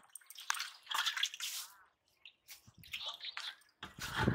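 Water splashing and dripping in a large basin in short irregular bursts, with a brief pause in the middle and a few smaller splashes after it.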